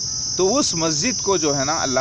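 A steady, high-pitched chorus of insects running without a break, with a man's voice talking over it from about half a second in.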